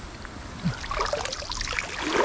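Shallow creek water stirred around a wading leg: a steady watery rush with a few small knocks.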